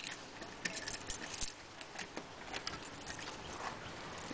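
Faint, scattered clicks and taps of a lever-handle door latch being worked and the door pushed open.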